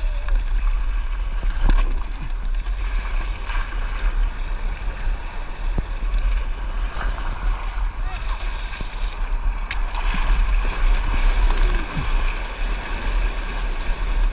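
Surfski paddle blades splashing into the sea and water rushing along the hull, with wind buffeting the microphone as a low rumble. Near the end the rush of breaking surf grows louder as the boat rides through whitewater.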